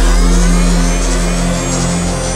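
A drum and bass breakdown with no drums: a deep bass note holds steady under rising synth sweeps.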